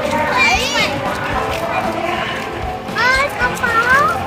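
Children's voices: a high squeal about half a second in and rising shouts near the end, over general chatter.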